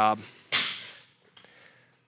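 A single sharp clatter about half a second in, dying away quickly: the plates of a loaded barbell rattling on its sleeves as the bar is power-snatched and caught overhead.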